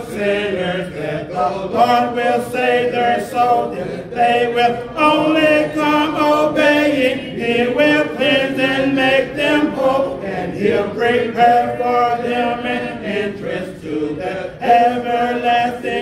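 Unaccompanied hymn singing: a man's voice leads a hymn into the microphone in long held notes, with the congregation singing along a cappella and no instruments.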